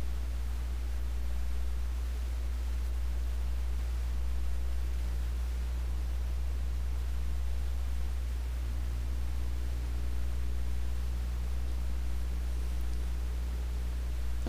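A steady low hum under an even faint hiss, unchanging throughout, with no distinct events.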